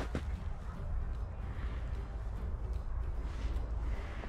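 Wind rumbling on the microphone outdoors, an uneven low buffeting that carries on throughout, with a faint hiss above it.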